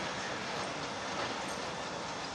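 Passenger coaches rolling slowly past, with the steady running noise of wheels on the rails.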